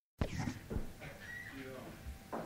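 Dead silence, then a studio recording cuts in abruptly about a fifth of a second in, carrying indistinct voice sounds and studio noise rather than music.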